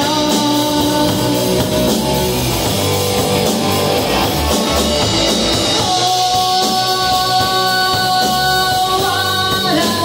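Live rock band playing: electric guitar, electric bass and drum kit with lead vocals, and a long held note starting about six seconds in.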